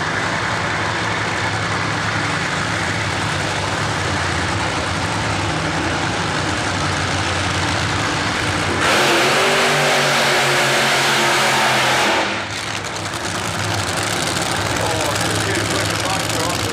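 Supercharged nitromethane Fuel Funny Car engines idling at the start line. About nine seconds in they rise to a much louder full-throttle run of about three seconds, the burnout that leaves tyre smoke over the start area. They then drop back to a steady idle.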